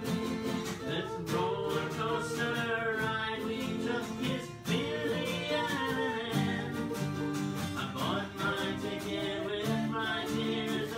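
An acoustic guitar strummed in steady chords while a man and a woman sing together.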